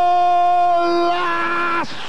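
A TV football commentator's long drawn-out goal cry, "gooool!", held on one loud steady note. The pitch shifts a little about a second in, and the cry breaks off just before the end.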